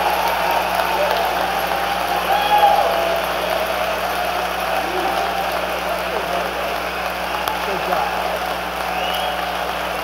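A large crowd applauding and cheering steadily, with a few scattered shouts.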